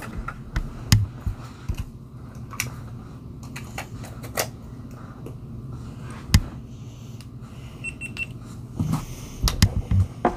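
Scattered light clicks and taps of small objects being handled on a table, the loudest about six seconds in, over a steady low hum. A faint short high beep sounds near eight seconds.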